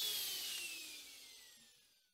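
Router with a bearing-guided bit winding down after being switched off, its whine falling in pitch and fading out to silence about one and a half seconds in.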